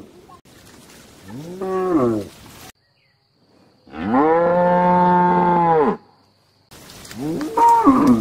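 Cows mooing: three separate moos divided by brief silences. A short one rises and falls about a second and a half in, a long steady one of about two seconds sits in the middle, and a third starts near the end.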